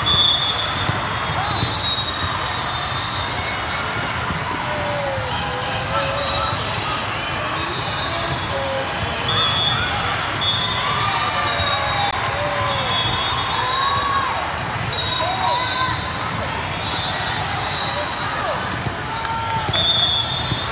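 Busy indoor volleyball hall din: many voices calling and chattering, ball hits, and short high squeaks, typical of sneakers on the sport court floor, repeating throughout.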